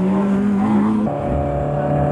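Rallycross car engine rising in pitch as it accelerates. About a second in, it gives way abruptly to another car's engine running at steady revs while standing on the start grid.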